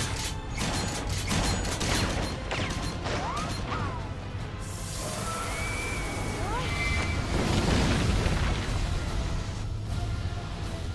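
Animated fight-scene soundtrack: action music mixed with booms, sharp impact hits and short sweeping effects.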